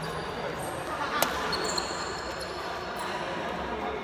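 A single sharp crack of a badminton racket striking a shuttlecock about a second in, followed by a lighter hit, with brief high squeaks of court shoes on the floor.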